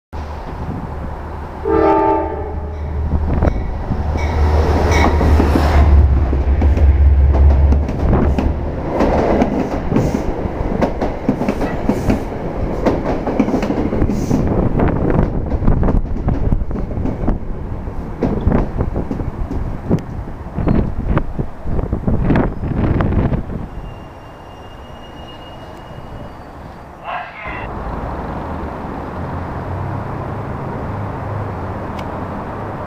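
Passenger train passing along a station platform: a short multi-tone horn blast about two seconds in, then a loud rumble and fast clatter of wheels over the rails that drops away about twenty-four seconds in.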